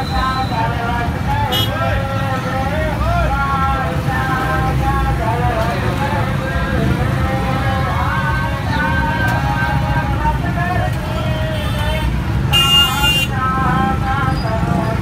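Busy street traffic with engines running and voices going on throughout, and a vehicle horn sounding once for under a second near the end.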